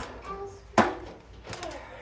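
Handling knocks on a sheet-metal fluorescent light fixture while a replacement ballast is being fitted: a click at the start, then a sharper, louder knock with a brief ring just under a second in.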